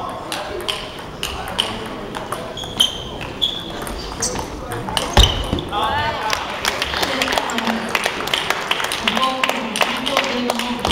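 Table tennis rallies: a celluloid ball clicking in quick succession off bats and table, over the chatter of spectators' voices in a large hall, with a loud thump about five seconds in.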